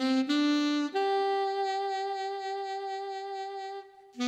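A saxophone voice on a Yamaha Genos arranger keyboard, played by the right hand: two short rising notes, then a higher note held about three seconds with a slight vibrato.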